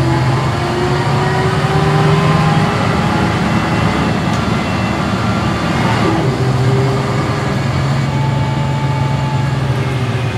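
Volvo B10M bus's mid-mounted six-cylinder diesel engine heard from inside the passenger cabin, pulling steadily through the ZF automatic gearbox. The engine note drops sharply at a gear change about six seconds in, then holds steady again.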